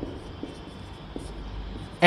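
Marker pen writing on a whiteboard: a few faint strokes and taps over a low steady room hum.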